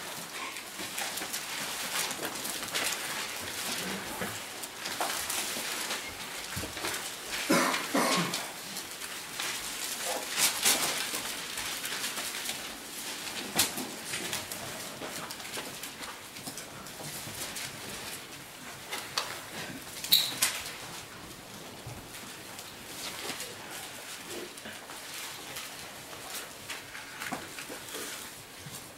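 Bible pages being leafed through in a quiet room, with scattered soft rustles and clicks. There is a brief pitched sound about eight seconds in.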